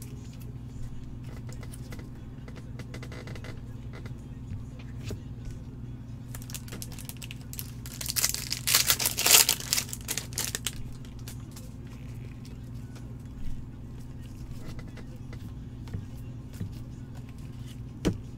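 A foil trading-card pack wrapper being torn open and crinkled by gloved hands, in a loud burst about eight seconds in lasting a couple of seconds, with a shorter rustle later, over a steady low hum.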